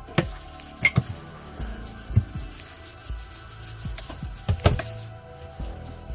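Galley cabinet doors being shut and opened: a handful of sharp clicks and knocks from the doors and their latches, scattered through the few seconds. Quiet background music plays under them.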